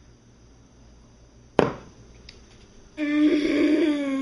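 A sudden thump about a second and a half in, then a person lets out a long vocal sound held at one steady pitch for over a second, right after drinking from the glass.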